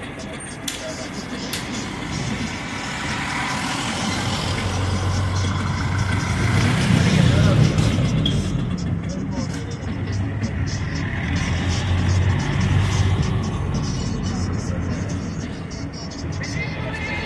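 Street traffic noise with a vehicle engine hum that swells to its loudest about halfway through and then eases off. Voices and music are mixed in.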